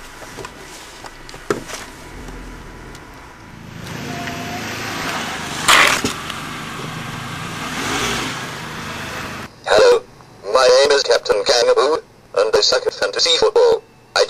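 A car pulling away on the road, its engine and tyres building to a steady noise, with one sharp bang about six seconds in. After about nine and a half seconds a voice takes over.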